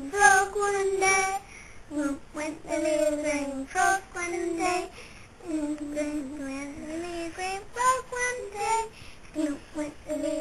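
A young girl singing a song, one sung line after another, with notes held for up to about a second.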